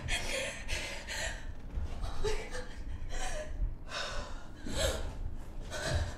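A person gasping for breath, a rapid run of ragged breaths about one a second, some with a faint whimpering voice in them, over a low rumble.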